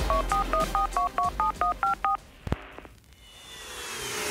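Touch-tone telephone dialing: about a dozen quick beeps, each two tones at once, some five a second, stopping a little after two seconds. A single click follows, then music swells in near the end.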